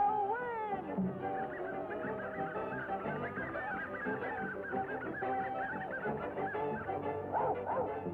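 Cartoon puppies yipping over orchestral music: many short, high chirps in quick succession, then a few lower, louder calls near the end.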